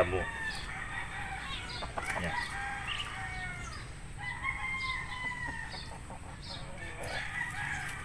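Roosters crowing in the background, several long held calls one after another that fall in pitch at the end.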